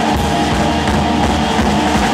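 Rock band playing live: electric guitar, bass guitar and drum kit, loud and steady.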